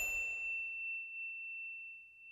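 Ringing tail of a single high-pitched bell-like ding sound effect. Its upper overtones die away within the first second, and the main tone fades out near the end.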